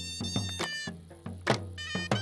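Traditional folk dance music: a drum beats with deep booming strikes, loudest about a second and a half in, under a high, wavering melody line.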